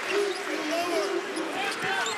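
Arena crowd noise during a college basketball game, with a basketball being dribbled on the hardwood court.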